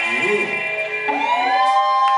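Electric guitars ringing out at the end of a rock song, the drums stopped: several held notes slide up in pitch about a second in and then sustain steadily.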